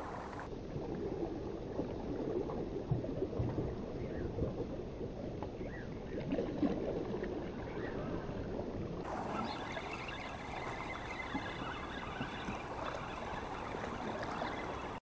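Shallow seawater lapping and sloshing close to the microphone, a steady watery wash at an even level.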